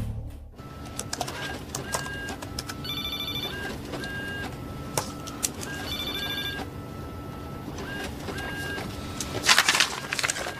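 Short electronic beeps at irregular intervals over a steady low hum. Two longer buzzing electronic tones, each under a second, come about three seconds apart. A burst of louder noise arrives near the end.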